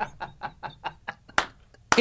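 A man laughing in rhythmic 'ha ha ha' pulses that fade out within the first second, followed by two sharp clicks.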